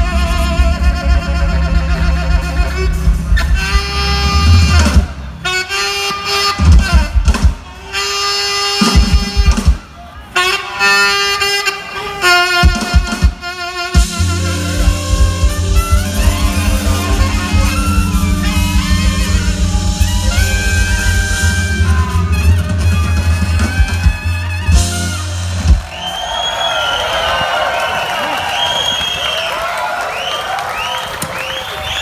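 Live New Orleans jazz band, with saxophones, trumpet and rhythm section, playing short punched phrases broken by brief stops, then holding a long closing chord that ends about 26 seconds in. The crowd then cheers and applauds, with whistles.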